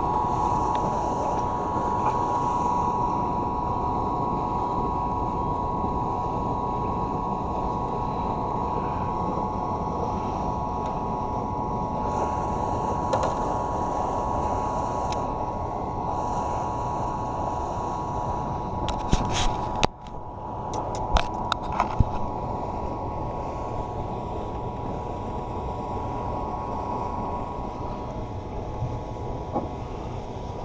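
A steady motor hum with a high whine, over a low rushing noise. A cluster of sharp clicks and knocks comes about two-thirds of the way through.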